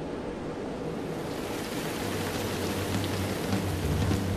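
Rain sound effect: an even hiss of rain that grows louder, with low notes coming in during the second half as the song starts.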